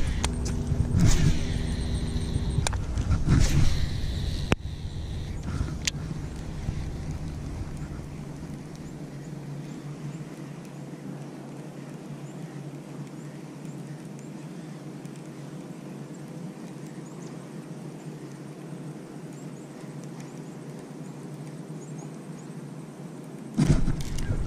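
Baitcasting reel whirring as its spool pays out line on a cast, with a steady tone for about two and a half seconds at the start. A long quieter stretch follows, then a sudden loud burst of sound near the end as a bass hits and the rod bends into the fish.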